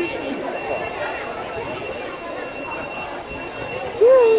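Crowd chatter from many people queuing in a busy bus terminal, with a high, thin electronic tone sounding on and off underneath.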